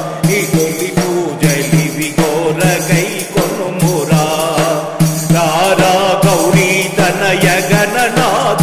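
A man singing a Telugu devotional bhajan to Lord Ganesha in melodic phrases, over a steady low note and regular percussion.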